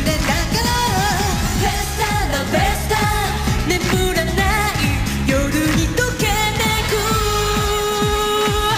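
J-pop sung by female voices over a dance-pop backing track with a steady beat. About seven seconds in, the voice holds one long note.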